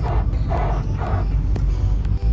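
Honda Civic EG's engine running at idle, a steady low rumble inside the cabin, with a few indistinct higher sounds and a single click over it.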